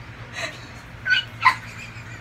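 A few short, high-pitched squeals of laughter, breathy and wordless, the loudest about a second and a half in.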